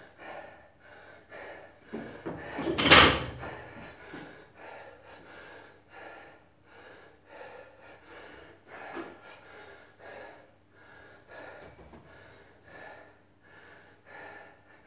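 A man panting hard after an intense workout, short breaths in and out about twice a second, with one much louder, forceful breath about three seconds in.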